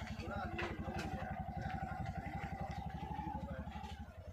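A small engine idling with a rapid, even putter that stays steady throughout. A faint, steady higher whine runs over it from about a second in.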